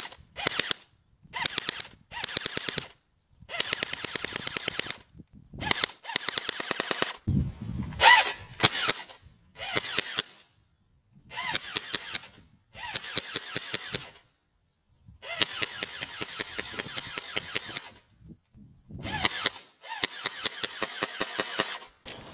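Airsoft gun firing rapid bursts at close range, about ten shots a second in strings of one to two seconds with short pauses between, the pellets striking the glass screen of an iPod Touch.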